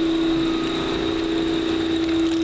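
Steady machine hum holding one constant pitch, with a fainter high whine above it.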